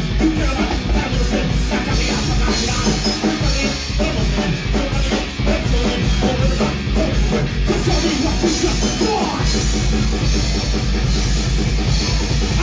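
A live punk rock band playing loudly: distorted electric guitar, bass guitar and a drum kit keeping a steady driving beat.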